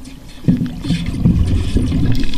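Low rumbling water noise picked up underwater, with a sudden thump about half a second in, after which the rumble stays louder.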